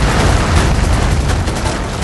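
Bauxite ore pouring from a haul truck into a crusher hopper: a dense, low rumble of tumbling rock that eases slightly toward the end.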